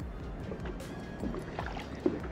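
Water sloshing and gurgling around a camera held half-submerged at the waterline beside a boat hull, as a hand eases a walleye back into the water. Music plays underneath.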